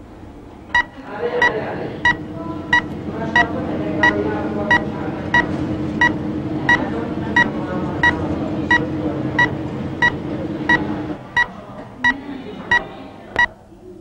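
Short electronic beeps, about one and a half a second, over a steady low hum that stops about three seconds before the beeps do.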